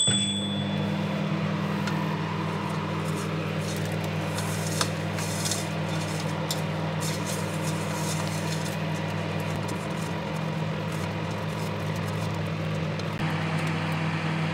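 A microwave oven beeps once and starts heating a mug of cream, running with a steady hum. A spatula scrapes now and then in a steel saucepan of melting sugar.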